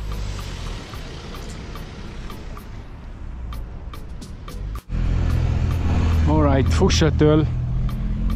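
Outdoor noise of wind and road traffic at a mountain pass: a steady hiss, then after an abrupt cut about five seconds in, a louder, deeper rumble with a short burst of voice.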